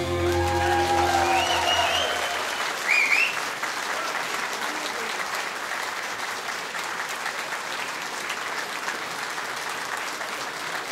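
The band's final chord rings out and fades over the first couple of seconds. Under it, and after it, a theatre audience applauds steadily, with a few short calls from the crowd about two to three seconds in.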